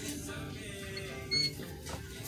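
Faint background music in a shop, with a brief higher-pitched sound about one and a half seconds in as the wooden cabinet door is handled.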